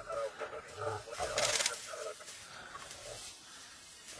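African wild dogs giving short, bird-like twittering calls while feeding at a kill, with a sharp noisy burst about a second and a half in.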